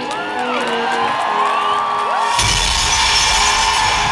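Live arena concert music heard from the audience: held synth tones with the crowd cheering and whistling over them, then a heavy dance beat with deep bass crashes in about two and a half seconds in.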